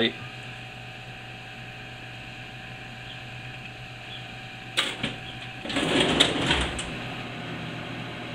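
A strand of antique McNeil's H-Plate barbed wire slid back into a metal filing-cabinet drawer, with a sudden clank about five seconds in, then a second or so of scraping and rattling against the other wire pieces. A steady low hum runs underneath.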